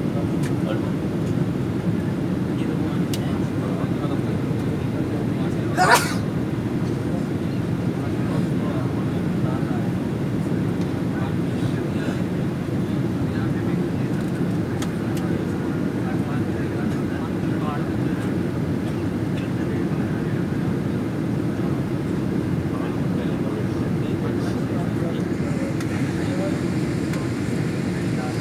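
Steady low rumble of a jet airliner's cabin, the engines and air system holding an even level throughout, with faint passenger chatter beneath it. A brief sharp sound stands out about six seconds in.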